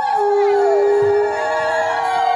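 Several conch shells blown together in long held notes at different pitches, overlapping, some ending in a falling slide: the ceremonial conch blowing of a Bengali Hindu welcome.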